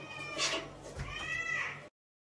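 Two high-pitched vocal calls, a short one at the start and a longer one about a second in that rises then falls in pitch, with a couple of light knife taps on a wooden cutting board. The sound cuts off abruptly just before the end.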